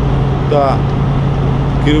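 Vehicle engine idling with a steady low hum, under a man's voice speaking a single word about half a second in.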